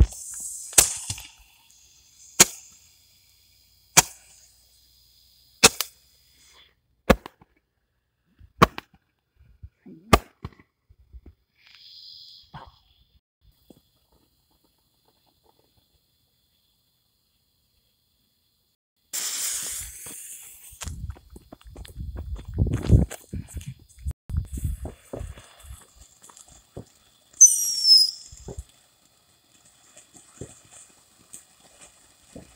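Firework reports going off one at a time about every second and a half, growing fainter, over the first ten seconds. After a quiet spell comes a hiss, footsteps crunching on gravel, and near the end a brief falling whistle as a ground fountain firework starts spraying sparks.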